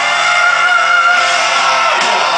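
Live rock band with piano, heard loud and distorted as recorded from within the crowd, with a long high note held over the band.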